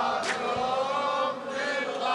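Male voices chanting a held line of a Shia devotional latmiya led by a radood, with one sharp hit about a quarter of a second in.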